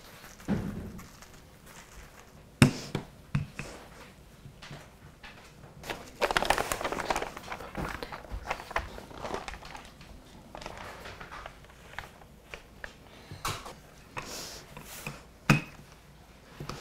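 Wooden rolling pin knocking and bumping on a countertop while pie-crust dough is rolled up onto it over parchment paper, with a few sharp knocks and a stretch of paper rustling about six seconds in.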